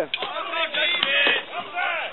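Spectators shouting and cheering over an armoured sword-and-shield fight, with a few sharp knocks of blows landing on shields and armour.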